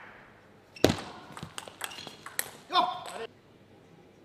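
Table tennis rally: the ball clicks sharply off bats and table, the loudest hit about a second in, followed by a quick series of lighter clicks. A short shout comes near three seconds, and the sound then cuts off suddenly.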